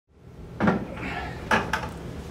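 Two sharp knocks about a second apart, the second followed closely by a lighter one, over a low room hum.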